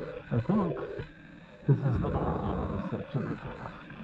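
A man's voice making low vocal sounds without clear words, in two short bursts: about half a second in and near the middle.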